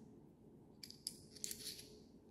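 A few faint clicks and clinks in the second half as a Peak Design Capture camera clip and its mounting plate are handled.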